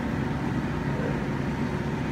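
A steady low hum and hiss of background machine noise, even and unbroken, with no distinct events.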